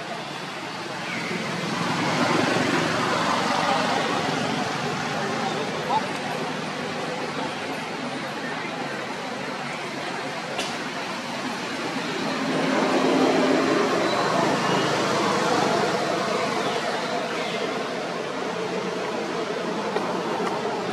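Indistinct voices of people talking in the background over steady outdoor noise, swelling louder twice, with a single sharp click partway through.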